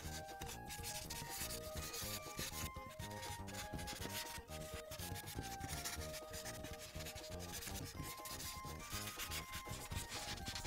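Ohuhu paint marker tip rubbing across paper in rapid back-and-forth strokes, filling in a large area of colour, over quiet background music with a simple melody.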